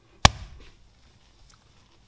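A single sharp slap about a quarter second in as a lump of sticky bread dough is brought down onto the kneading board, followed by faint soft sounds of hands working the dough.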